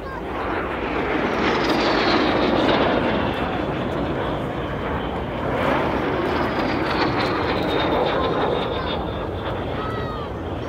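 Aero L-39 Albatros jet trainer's turbofan engine during a low display pass: a loud rush of jet noise with a high turbine whine that falls in pitch as the jet passes. The sound swells again with a second falling whine in the second half.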